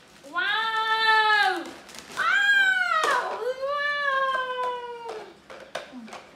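A young macaque's long whining coo calls, three in a row: the first two rise and fall in pitch, and the third slowly falls away.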